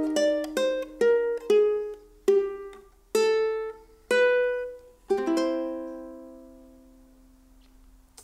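Makai concert ukulele in standard tuning played fingerstyle: single plucked notes, slowing down, then a rolled C chord about five seconds in that is left to ring and die away. It is the final cadence of the arrangement, changing key from E-flat back to C.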